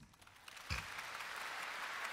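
Concert audience applauding, quietly and steadily, starting about half a second in after a brief hush.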